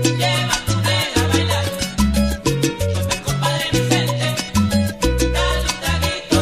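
Salsa band recording playing an instrumental passage with no vocals: a bass line stepping between low notes under dense, quick percussion strokes.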